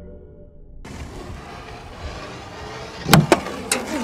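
Soft ambient music fades out in the first second, then a steady background hiss. About three seconds in come two sharp, loud cracks close together and a third about half a second later: large neodymium cylinder magnets snapping together on a chicken bone.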